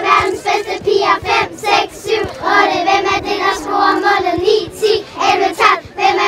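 A group of children singing together in unison, their high voices holding notes in short phrases.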